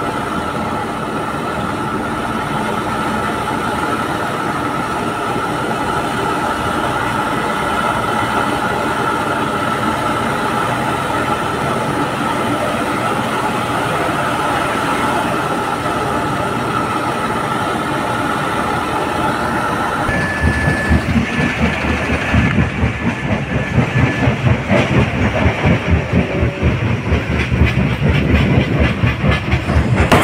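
Inside a moving truck's cab on a rough dirt road: steady engine and road noise with a high, even whine. About two thirds of the way through it changes abruptly to a fast, uneven pulsing rattle.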